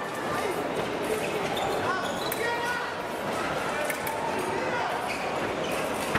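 Fencers' shoes squeaking and stamping on the piste during footwork, over the steady murmur of voices in a large, echoing hall, with a few sharp clicks.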